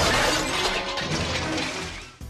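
A large plate-glass window shattering as a body crashes through it, a dense spray of breaking glass that starts abruptly and slowly dies away, over dramatic film-score music.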